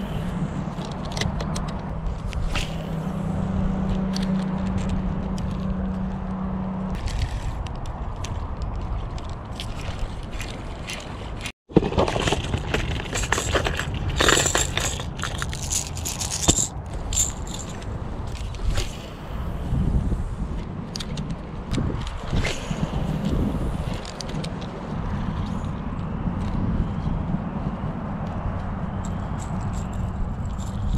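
Wind buffeting the microphone throughout as a constant low rumble. For about the first seven seconds a spinning reel is cranked with a steady whir. After a cut about 12 seconds in, hard plastic lures and a clear plastic tackle box click and rattle as they are handled.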